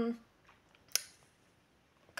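A single sharp click about a second in, over quiet room tone after a hesitant 'um'.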